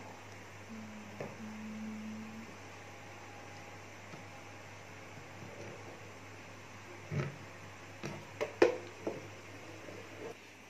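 Quiet handling of a plastic mixing bowl as a liquid ice-cream mixture is poured into a plastic tub, over a low steady hum. A few sharp knocks come in the last three seconds, the loudest about eight and a half seconds in.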